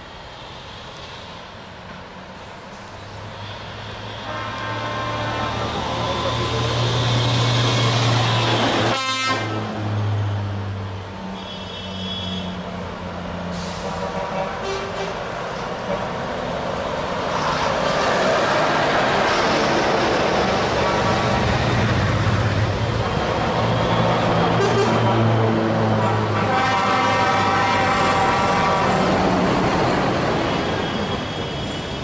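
A convoy of heavy tow trucks driving past, their diesel engines running, louder as each truck passes. Truck horns are sounded several times, with a long horn blast near the end.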